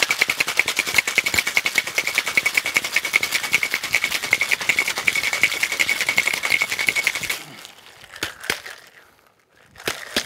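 Ice rattling hard inside a tin-on-tin cocktail shaker during a vigorous shake of about seven seconds, with a metallic ring from the tins. The shaking stops and a few sharp knocks on the locked tins follow, as the stuck seal is struck to open it.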